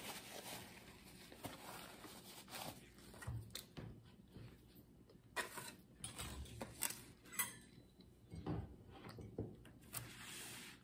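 Faint scattered rustles, light clicks and small knocks from a paper napkin and things being handled on a table.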